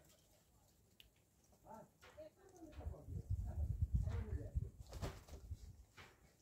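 Muscovy ducks making soft, low cooing calls over a low rumble, starting about two seconds in and fading out near the end.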